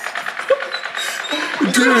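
Toy gel-bead blaster firing repeatedly, a fast, even mechanical rattle that stops about halfway through.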